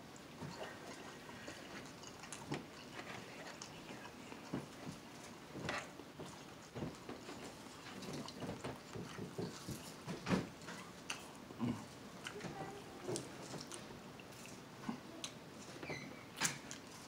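Close-miked chewing and wet lip smacking from someone eating a seafood boil: quiet, irregular clicks and squelches of the mouth, with no steady sound under them.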